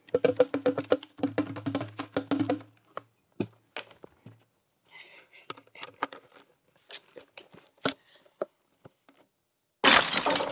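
Grape juice glugging out of an upended juice bottle into a glass jar: a quick run of glugs for the first three seconds or so, then slower, scattered glugs and drips as the bottle empties.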